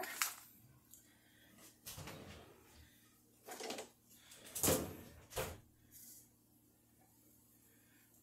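A handful of separate clacks and knocks, the loudest about halfway through, as a microwave door is opened and a plastic microwave grill is lifted out and its lid handled.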